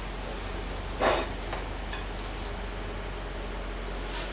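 Brief crackling rustle of tortilla chips being handled and laid into a bowl about a second in, followed by a couple of faint clicks, over a steady low hum.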